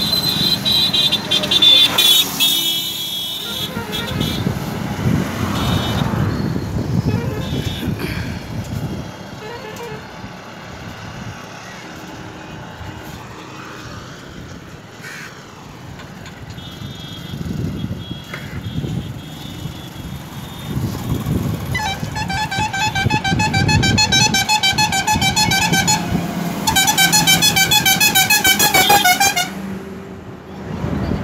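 Highway traffic heard from a moving vehicle: engine and road rumble with wind noise, and vehicle horns honking. A steady horn sounds in the first few seconds. In the last several seconds a loud warbling horn pulses rapidly in two long bursts.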